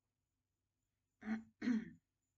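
A woman clearing her throat: two short voiced sounds in quick succession, starting a little over a second in.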